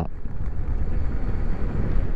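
Steady low rumble of wind buffeting the microphone, mixed with road noise from an electric bike riding on asphalt.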